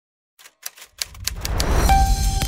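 Typewriter keys striking in a quick, irregular run of clicks, beginning about half a second in, as the title is typed out. A low musical swell rises under the clicks, and a melody begins near the end.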